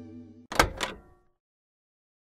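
The last of an electric guitar chord dying away, cut off about half a second in by a short sound effect of two quick knock-like hits with a brief ringing tail.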